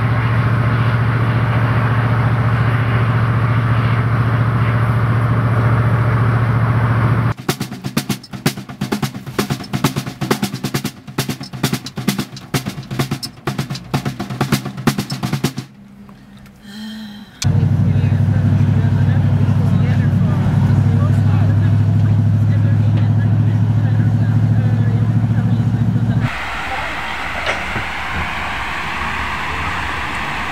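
Ford van engine running at a steady low drone, heard inside the cabin. In the middle stretch of about eight seconds, a snare drum is played by hand in quick, uneven beats. The drone then returns and drops away to a quieter background near the end.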